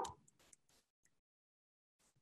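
Near silence: a voice trails off right at the start, then a few faint clicks in the first second, then nothing.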